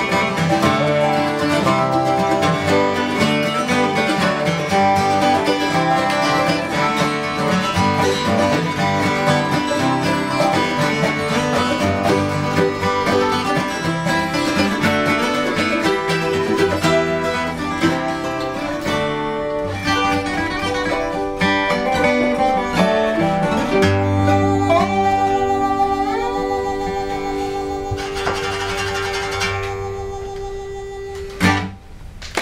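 Acoustic string band of a lap-played slide guitar, acoustic guitars and a mandolin playing an instrumental passage without singing. From about the 24th second it settles into a long held final chord, one note wavering with vibrato, fading as it rings out near the end.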